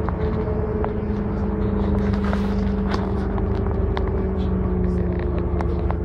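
Inside the upper deck of a moving London double-decker bus: a steady low engine drone with a humming tone that slowly drops in pitch, and frequent small rattles and clicks from the cabin.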